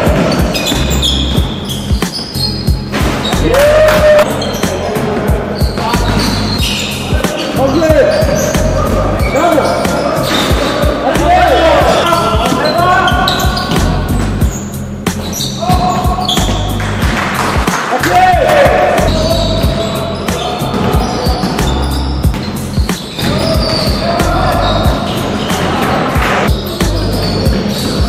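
Sound of an indoor basketball game in a large, echoing gym: a ball bouncing on the wooden floor, short squeaks of sneakers, and players calling out.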